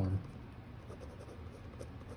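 Ballpoint pen writing on paper, with faint scratching strokes.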